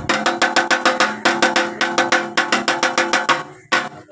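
Drum beaten with sticks in a quick, even rhythm of about six strokes a second, each stroke leaving a ringing tone. The beat breaks off briefly near the end, then starts again.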